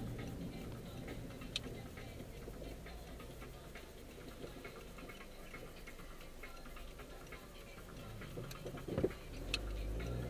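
A car's turn-signal indicator ticking steadily inside the cabin over a low engine and road rumble, with a thump near the end.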